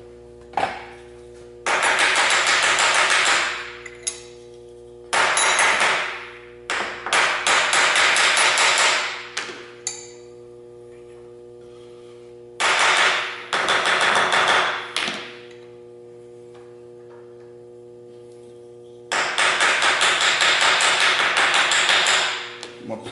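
A soft-faced mallet rapidly tapping a steel bar-stock workpiece down in a milling-machine vise, in six quick runs of blows a second or two long, with pauses between them.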